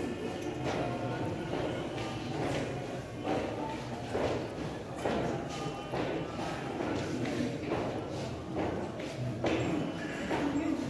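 All-male Zulu choir singing a cappella in isicathamiya style, with a soft thud of feet on the stage about once a second.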